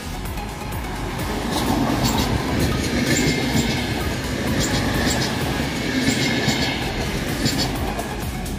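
VR Sm4 electric multiple unit running close past, its wheels clicking over rail joints in pairs about every second and a half, over a steady rumble.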